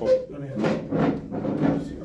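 Men's voices talking off-mic, words unclear, with a brief knock or bump just at the start.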